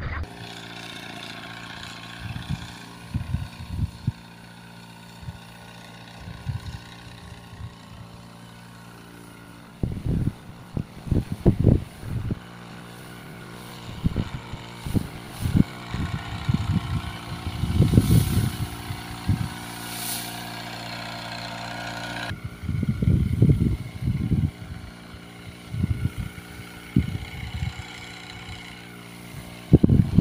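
Small engine of a motorized backpack sprayer running steadily while it sprays, with repeated loud low thumps on the microphone.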